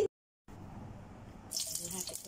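Silent for the first half second, then a faint hiss. About one and a half seconds in, whole garlic cloves start sizzling in hot oil in a wok.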